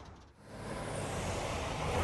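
Street traffic: a vehicle's noise swells in about half a second in and runs on steadily, with a low engine hum growing near the end.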